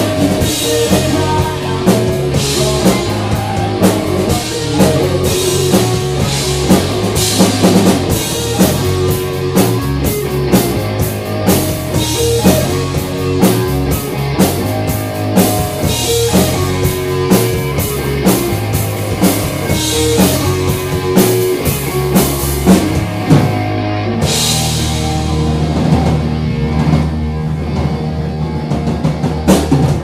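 Live rock band playing: electric guitar, bass guitar and drum kit with a steady beat. About six seconds before the end the beat gives way to a long held chord with ringing cymbals.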